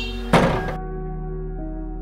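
A single loud thud of a wooden door shutting, about a third of a second in, over background music with sustained tones.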